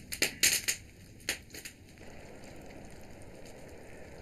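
Wood fire crackling: a quick run of sharp pops and cracks in the first two seconds, then only faint low background noise.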